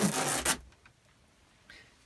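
Black fabric teleprompter hood pulled off its frame: a short burst of cloth rustling in the first half second, then near silence.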